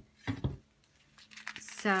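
Faint light clicks and plastic rustling as small plastic sequins are tipped into a clear page-protector sleeve.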